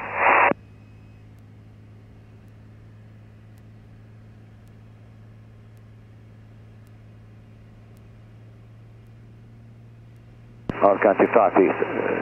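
Single-engine piston airplane's engine and propeller as a faint, steady low drone, heard through the cockpit headset/intercom audio. Radio voice traffic cuts off about half a second in, and speech comes back in near the end.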